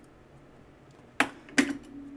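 Two sharp clicks about half a second apart, near the end, from a folding knife and digital calipers being handled and put down after a measurement.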